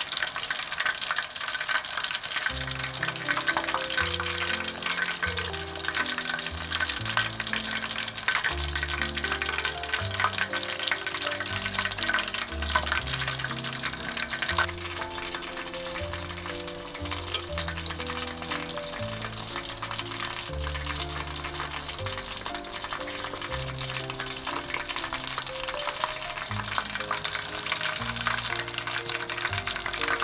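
Batter-coated shrimp deep-frying in hot oil, a dense, steady crackle and sizzle full of tiny pops as chopsticks turn them. Soft background music with low notes comes in about two seconds in.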